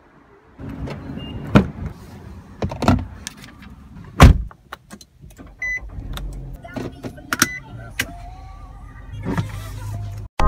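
Getting into a car and starting it: a series of sharp clunks and clicks, the loudest about four seconds in, and short chime beeps a little past halfway. Near the end the engine starts on the push-button ignition and runs with a low rumble.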